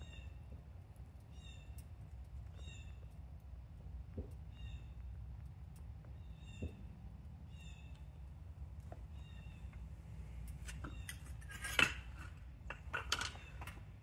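A small bird chirping about once a second over a low steady rumble. Near the end, a few sharp metal clanks, loudest about twelve seconds in, as the crucible and steel tongs are set down on the pavement.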